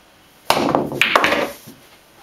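Pool bank shot: the cue tip strikes the cue ball about half a second in, followed by sharp clacks of balls hitting the cushion and each other, and rolling that dies away about a second later.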